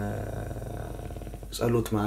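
A man's voice trailing off into a low, creaky drawn-out sound while he hesitates, then speech picking up again near the end.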